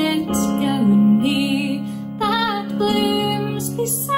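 A woman singing a slow Scottish folk ballad solo, with a wavering vibrato on her held notes, over steady sustained low accompaniment notes.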